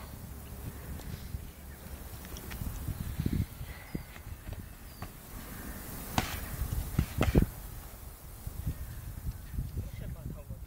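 Boxing gloves landing in a light sparring exchange, scattered thuds with a few sharper hits about six and seven seconds in, over a steady low rumble on the microphone.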